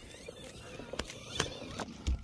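A dog's paws on a wooden boardwalk, heard faintly as a few sharp ticks spaced under half a second apart over quiet outdoor hiss.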